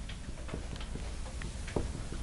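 Dry-erase marker writing on a whiteboard: a handful of short, irregular taps and scrapes as it strikes and lifts off the board, over a steady low room hum.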